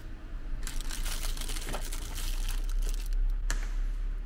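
A plastic bag and paper towels crinkling as they are handled, for about two and a half seconds, then a single sharp click near the end.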